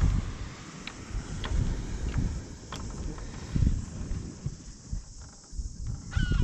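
Wind buffeting the microphone in uneven gusts, loudest a little past halfway, with a few faint, sharp ticks in the first half.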